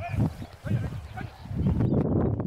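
A dog giving several short, high whines or yelps over a low rumble.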